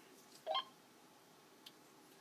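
A single short, rising electronic chirp from a push-to-talk two-way radio about half a second in, followed by a faint click near the end over a quiet background.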